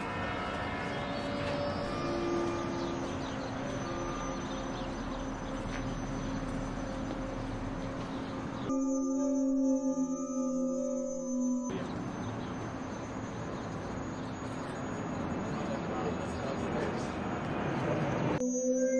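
Steady outdoor street noise from passing traffic, with soft background music underneath. About nine seconds in, the noise cuts out for roughly three seconds and only the music is heard, then the noise returns.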